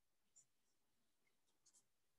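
Near silence, with a few very faint, brief high ticks.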